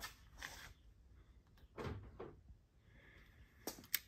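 Faint handling noises: light knocks and rustling of parts being moved, ending with two sharp clicks.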